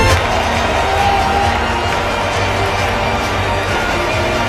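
Noise of a large stadium crowd, a dense, steady wash of many voices, with music playing over it.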